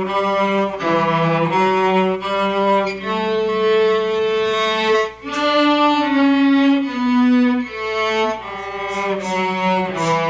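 Two cellos playing a simple folk tune together, a slow melody of held bowed notes, with a short break about five seconds in followed by a run of lower notes.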